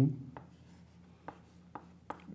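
Chalk writing on a chalkboard: a few faint, short taps and scrapes as numbers are written.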